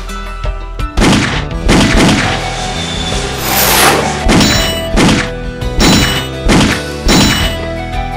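Film sound effects of handgun shots: a series of sharp bangs about 0.7 s apart, beginning about a second in, with a whooshing bullet flyby in the middle, over background music.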